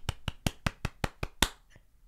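One person clapping hands quickly: about nine light claps at roughly five a second, stopping about a second and a half in.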